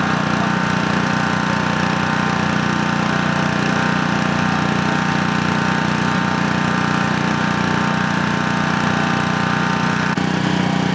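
Small gasoline engine of a hydraulic rescue-tool (Jaws of Life) power unit running steadily at a constant speed, driving the pump for the extrication tools.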